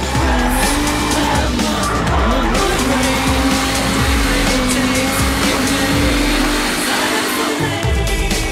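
Drift car engine revving hard, its pitch rising and falling, with tyres squealing, under a music track.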